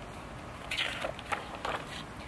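A picture book's page being turned: a brief paper rustle with a few light crackles, over faint steady background noise.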